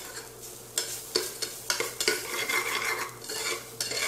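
A metal spoon stirring food frying in an open pressure cooker, with a faint sizzle underneath. Several separate scrapes and knocks of the spoon against the pot are spread through the stirring.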